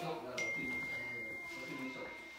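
A steady high-pitched tone starts about half a second in and holds unchanged, with faint voices underneath.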